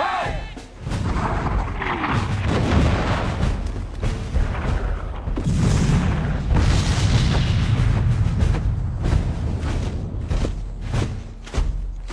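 Film battle soundtrack: orchestral score under cannon booms and musket fire, with sharp shots coming thick and fast over the last few seconds.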